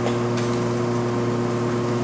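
A steady low electrical hum with several fixed pitches, typical of mains hum picked up through a microphone and sound system.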